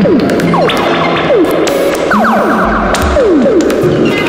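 Electronic synthesizer output from a Buchla-format prototype module that combines an Orgone Accumulator FM oscillator with a Radio Music sample player, heard through added reverb and delay. It makes a busy wash of repeated downward pitch sweeps over held tones and noise.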